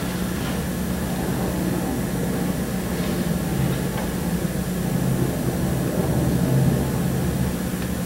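Steady low hum, like a fan or electrical hum, with a couple of faint clicks in the middle.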